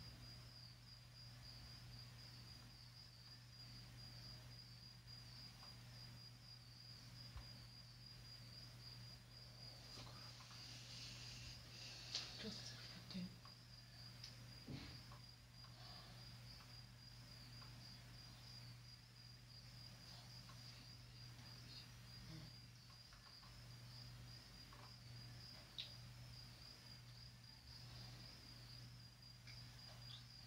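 Near silence: room tone with a low steady hum and a faint, high, pulsing whine, broken by a few faint clicks about midway.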